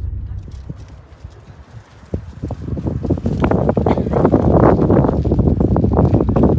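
Low car-interior rumble that fades away over the first two seconds, then a dense, irregular clatter and rustle of handling, loudest in the last three seconds.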